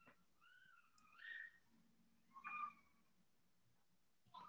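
Near silence: the room tone of an open call microphone, with two faint, brief pitched sounds, one about a second in and one about two and a half seconds in.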